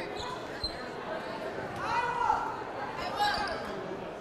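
A basketball bouncing on a hardwood gym floor, with one clear thump about two-thirds of a second in, amid echoing voices and chatter in a large gymnasium.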